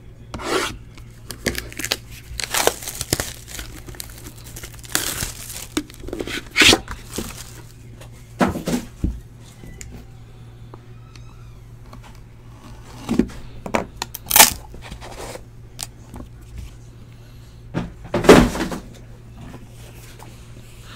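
Plastic shrink wrap being torn and pulled off a sealed trading-card box: irregular crinkling, tearing rustles with several louder rips, over a faint steady low hum.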